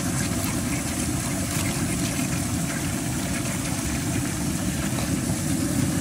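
A steady, low mechanical rumble with no distinct events in it.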